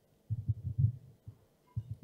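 Handling noise from a handheld microphone: a cluster of low thuds and rumbles, then another short pair near the end, as the mic is gripped and moved about at the lectern.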